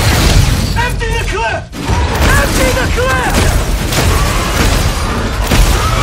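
A film battle sound mix: deep booms and heavy impacts under a loud, steady rumble, with several short cries that rise and fall in pitch, about a second in and again around two to three seconds. The loudness dips briefly just before two seconds.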